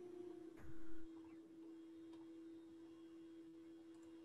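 A faint steady hum at a single pitch, carried on a video-call audio line, with a brief soft noise about half a second in.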